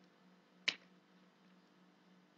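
A single sharp click from a computer key or mouse button about two-thirds of a second in, over a faint steady hum.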